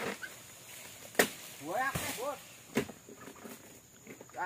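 Two sharp knocks of a dodos, a chisel blade on a long pole, striking into the base of an oil palm frond, about a second and a half apart, with a short vocal sound between them.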